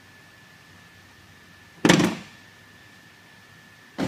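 A car's driver door shut once, about two seconds in: a single heavy thunk.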